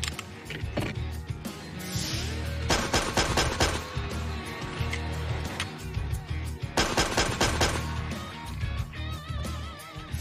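SIG Sauer P365 XL pistol fired in two quick strings of several shots each, about three seconds and about seven seconds in, over background music.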